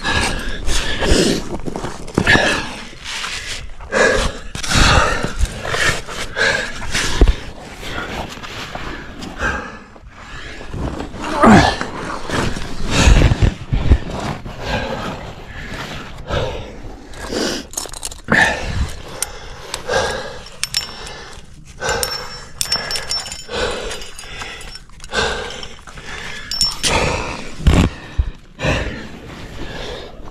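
A climber's hard, effortful breathing close to the microphone, mixed with irregular scrapes and knocks of hand, body and gear against the sandstone crack.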